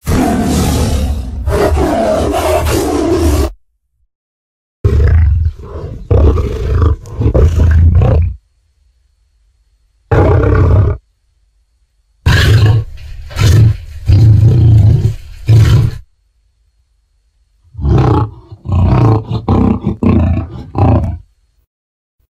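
Tyrannosaurus rex sound-effect roars: five separate low-pitched calls with dead silence between them, the longest lasting three to four seconds, the last one broken into short choppy pulses.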